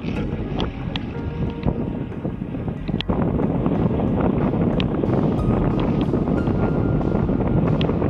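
Steady wind noise on the camera microphone and water rushing past a wingfoil board riding at speed, with a few sharp ticks of spray.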